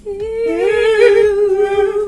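A young woman humming one long wordless note, rising slightly about half a second in and then held steady.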